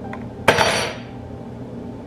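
A single sharp clatter of something hard being set down in a kitchen, about half a second in, with a brief ringing tail.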